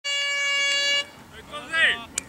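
A horn gives one steady blast of about a second, then cuts off. The blast is the signal that starts the quarter. Near the end, someone gives a brief shout across the field.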